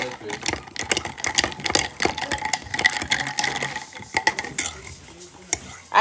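A metal table knife stirring an iced drink in a glass mug, clinking quickly and unevenly against the glass and the ice cubes. The clinking trails off near the end.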